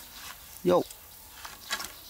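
One short word spoken by a man, over a faint outdoor background, with a brief sharp click near the end.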